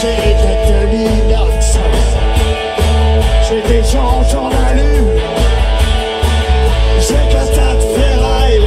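A rock band playing live and loud: electric guitar and bass guitar over a steady drum beat, in a passage without lyrics.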